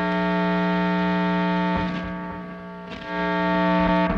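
Electric guitar through a Bliss Factory two-germanium-transistor fuzz pedal: a sustained, fuzzed note held at one pitch, fading a little and then picked again about two and three seconds in.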